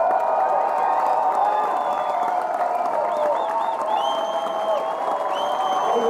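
Concert crowd cheering and applauding, with high whistles coming in from about three seconds in.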